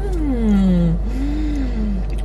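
A woman humming "mmm" with her mouth closed as she tastes a drink. The first hum rises and then slides down over about a second, and a second, shorter hum rises and falls near the end. A low, steady rumble runs underneath.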